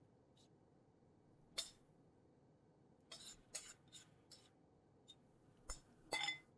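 Metal spoon scraping and tapping against a ceramic bowl as a tuna salad is spooned out: one sharp tap about a second and a half in, then a run of short, faint scrapes about three seconds in, over near silence.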